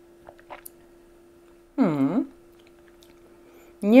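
A person tasting hot herbal tea from a glass mug: a few small sip and lip-smack sounds, then a single hummed "mmm" about two seconds in whose pitch dips and rises again as she weighs the taste. A faint steady low hum sits underneath.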